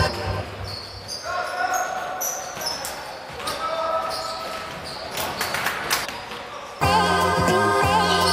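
A basketball bouncing on a wooden gym floor, with players' voices in a large hall. Loud background music with a steady beat comes in near the end.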